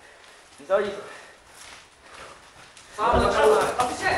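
Men's voices calling out: a brief call just under a second in, then louder, longer shouting from about three seconds on.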